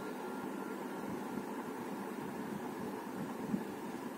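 Steady background room noise: an even hiss with a low hum and no distinct sound.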